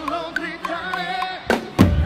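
Live band music: a sung melody over held keyboard chords with the drums largely dropped out, then drum strikes about one and a half seconds in and again near the end as the kit comes back in.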